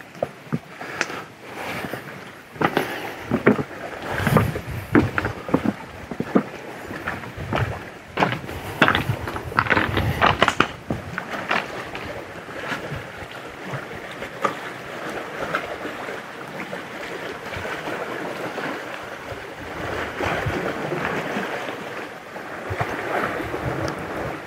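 Lake water lapping against a rocky limestone shore, with irregular steps knocking on rock through the first half, after which the steady wash of water carries on alone.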